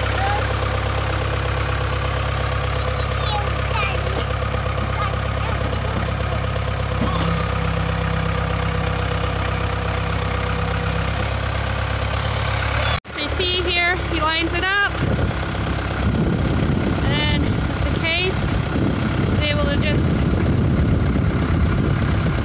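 Case 580E backhoe loader's diesel engine running steadily at idle. After a brief break partway through, it runs rougher and a little louder as the loader pushes a T-post into the ground.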